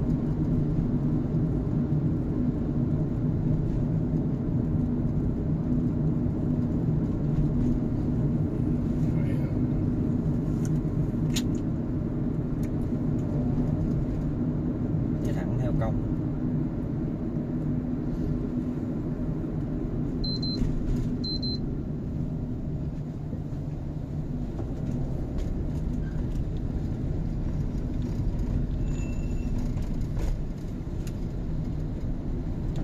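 Steady low road and engine rumble inside a car's cabin, easing a little as the car slows. Two short high beeps sound about two-thirds of the way through.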